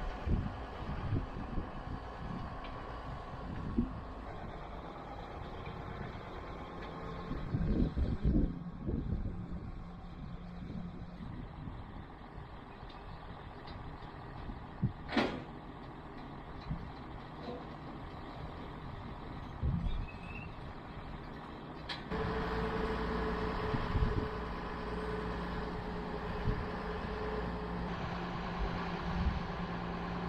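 A John Deere tractor's diesel engine runs while it moves a grain auger into place, with a few thumps and a sharp click about halfway through. About two-thirds of the way in the engine gets louder and steadier.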